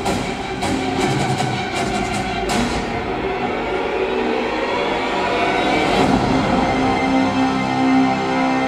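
Action-film trailer soundtrack playing: dramatic score with a quick string of hard hits in the first couple of seconds, then a sustained, rumbling low-pitched score.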